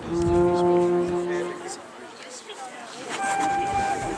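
A held horn-like note, low and steady, lasting about a second and a half, followed near the end by a shorter, higher held tone.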